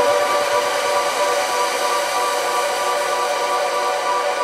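Techno DJ mix in a breakdown: the kick drum and bass are gone, leaving a steady, sustained synth chord with no beat.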